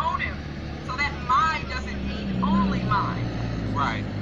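Quiet talking from a played-back video call over a steady low hum, the sound of a car cabin, with short bursts of voice about a second in, halfway through and near the end.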